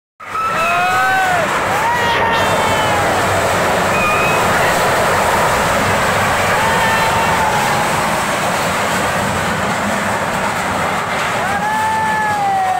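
A fast-flowing, flooded river making a loud, steady rushing noise, with people's voices calling out over it several times.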